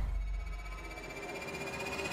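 Faint, steady background music.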